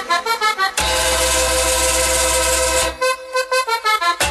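Recorded cumbia music led by accordion. It opens with a quick run of short notes, then a long held chord with deep bass from about a second in to near three seconds, then choppy short notes again.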